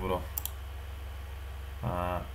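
A couple of quick clicks at the computer about half a second in, over a steady low electrical hum, with a short voiced 'mm' near the end.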